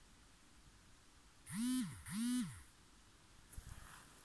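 A voice calls twice in quick succession about halfway through, each call about half a second long, rising in pitch, holding, then dropping away.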